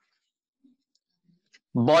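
Near silence with a few faint, light clicks of a stylus on a pen tablet; a man's speech begins near the end.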